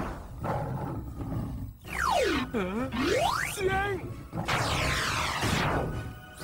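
Cartoon sound effects: a swooping whistle glide that falls steeply in pitch and climbs back up within about a second, a short wavering cry, then a rushing whoosh, over a low background layer.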